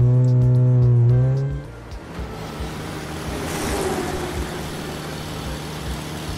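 Car engine sound effect for a toy race car. It opens with a loud engine rev that rises slightly in pitch and cuts off after about a second and a half, then settles into a quieter, steady running engine with a hiss of road noise as the car drives off.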